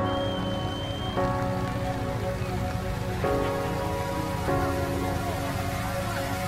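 Background music of held chords that change every second or two, over a steady noisy hiss.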